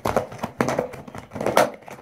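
Plastic slime container and zip-top bag being handled and pressed shut: a run of irregular sharp clicks and crinkles.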